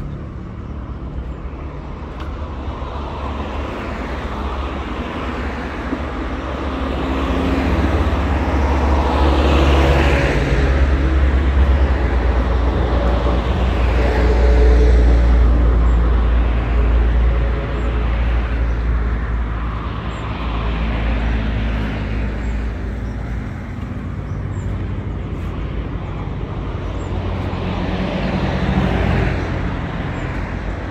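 Road traffic on a multi-lane road: a steady low rumble with several cars passing one after another, each swelling and fading, loudest around the middle.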